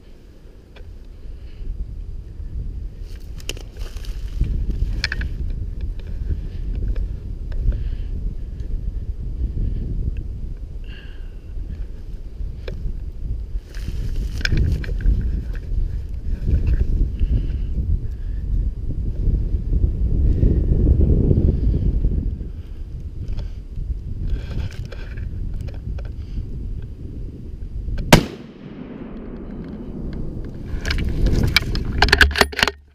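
A single gunshot from a hunting gun fired at a black bear, one sharp crack near the end and by far the loudest sound. Before it, a low rumbling noise with scattered rustles and clicks.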